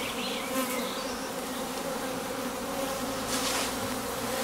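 Many honeybees buzzing around the entrance of a wooden hive: a steady hum.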